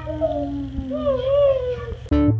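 Long, drawn-out vocal whines: two pitched voices overlap, gliding up and down, over a steady low hum.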